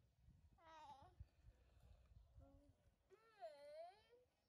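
A domestic cat meowing faintly three times, the last call the longest, dipping and then rising in pitch.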